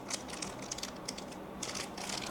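A small plastic packet of adhesive rubber feet handled in the fingers: a run of light, irregular crinkles and clicks.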